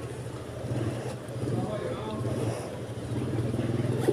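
A steady low engine hum running throughout, with faint voices in the background.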